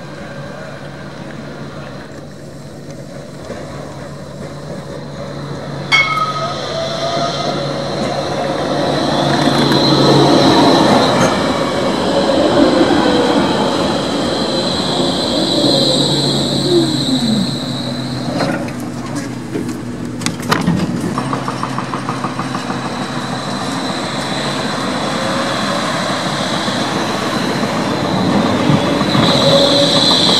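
Electric trams running on street track: a motor whine that falls in pitch about halfway through as a tram slows, with a high, steady squeal of wheels on the rails.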